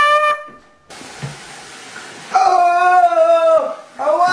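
A loud trumpet note cuts off. After a moment of steady hiss, a man lets out a loud, wavering held howl that sags in pitch as it ends.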